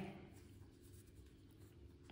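Near silence with faint rustling of hands handling a crocheted yarn ball and a metal yarn needle, over a low steady room hum.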